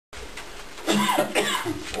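A person's brief laugh in a small room, starting about a second in, over faint room murmur.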